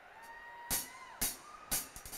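Live rock concert in an arena: three sharp drum hits about half a second apart as the band's song starts. A faint, high, held whistle-like tone sounds underneath and bends in pitch about a second in.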